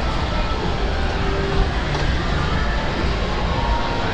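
Steady low rumble of a moving escalator under the general din of a busy indoor shopping mall.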